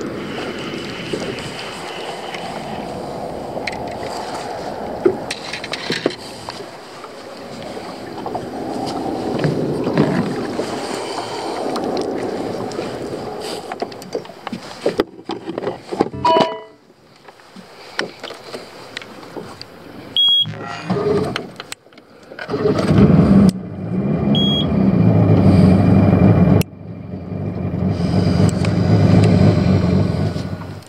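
Strong wind buffeting the microphone over open water, then, after a few abrupt cuts, a boat's outboard motor running steadily under way for the last third. Two short high beeps sound just before and just after the motor comes in.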